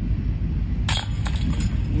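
A disc golf putt striking the chains of a metal chain basket about a second in, the chains jingling and clinking as the disc drops in for a made putt. A steady low rumble runs underneath.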